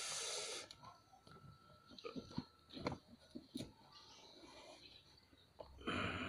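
Faint handling noise: a short rustling hiss at the start, then scattered light clicks and soft rustles as dry planting media is worked into the container.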